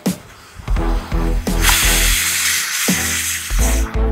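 Pressure cooker whistle lifting and venting steam: a loud hiss lasting about two seconds, starting about a second and a half in. The steam release is the sign that the cooker has reached full pressure.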